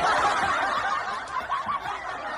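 Laughter from several overlapping voices, starting suddenly and loud, then easing off a little.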